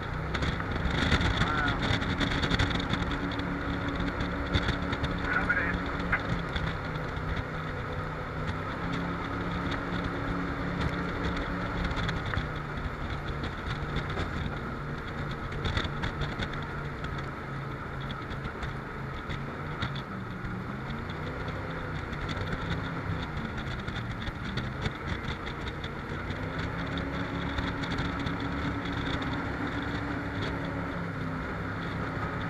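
Jet boat engine running at speed, its pitch dipping and rising a few times as the throttle changes, over a steady rush of noise from the boat moving through the water.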